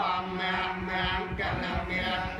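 A group of voices chanting Buddhist Pali verses together in a continuous recitation, with a steady low tone held underneath.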